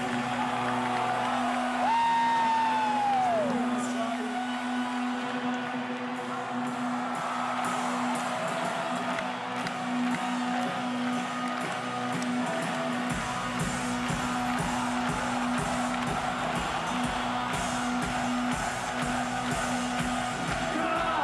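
Rock band's stage sound between songs in an arena: a steady hum from the amplifiers over crowd noise, with a tone that slides down in pitch about two seconds in. Deeper sound joins about thirteen seconds in.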